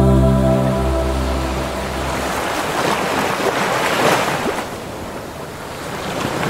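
The last held chord of a male a cappella group dies away over the first two seconds. Then sea waves wash onto the shore, swelling to a peak about four seconds in and easing off.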